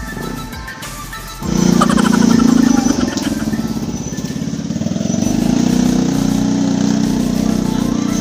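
A motorcycle engine running close by, coming in suddenly about a second and a half in and staying loud, over background music.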